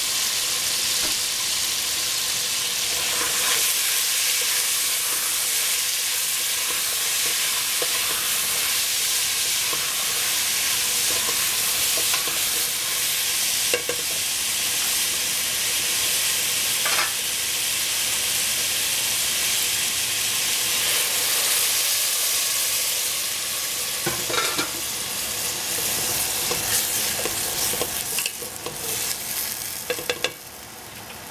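Baby squash frying in a stainless steel pot, a steady sizzle, with a few brief knocks and scrapes as the squash is stirred.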